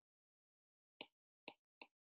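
Near silence broken by three faint, short clicks, the first about a second in and the next two about half a second and a quarter second after it.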